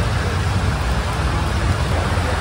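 Sudden heavy downpour pouring onto asphalt pavement like a waterfall: a steady rushing hiss with a deep rumble underneath.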